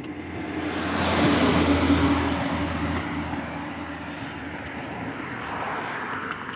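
A car driving past, its noise swelling over the first second or two and then slowly fading.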